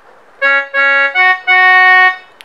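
Casio mini keyboard on a reedy harmonium-style organ tone, playing four held notes: two on one pitch, then two about a fourth higher (Sa Sa Ma Ma), the last one held longest.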